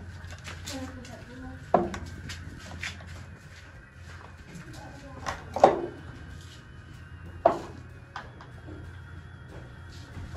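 Glass pint canning jars being set down on wooden pantry shelves: three sharp knocks, the middle one the loudest, with lighter clinks between, over a steady low hum.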